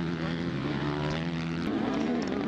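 Motocross bike engine running at a steady, held pitch, a continuous drone with no rise or fall in revs.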